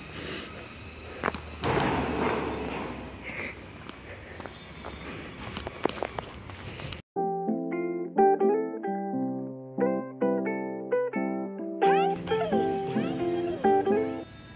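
Outdoor ambience with a few clicks and handling knocks for the first half, then background music of short, separate plucked notes that comes in abruptly halfway through and plays alone, with faint ambient noise returning under it near the end.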